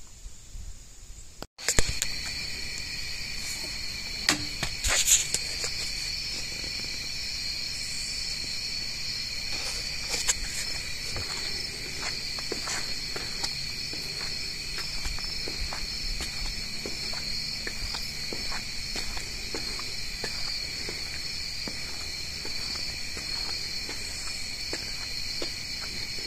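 A steady night chorus of insects, several high-pitched trills running on together, starts suddenly about a second and a half in. There are a few sharp clicks in the first few seconds after it starts.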